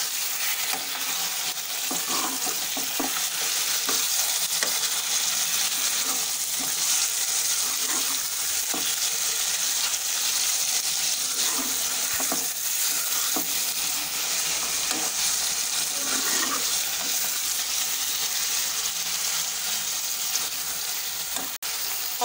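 Meat frying in hot oil with browned onions in an aluminium pot: a steady sizzle. A steel spoon scrapes and knocks against the pot now and then as the meat is stirred.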